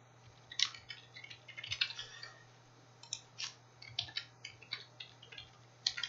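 Computer keyboard typing: short, irregular key clicks in quick runs with brief pauses, over a faint steady low hum.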